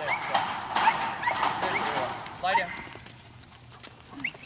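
Dog yipping and barking: a few short rising yips in the first two seconds, then a sharper bark about two and a half seconds in.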